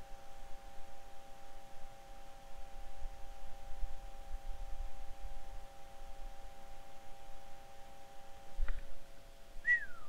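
A steady high whine of a few tones held together, with an uneven low rumble of handling noise beneath. The whine cuts off at a click near the end, and a short falling whistle-like squeak follows just before the end.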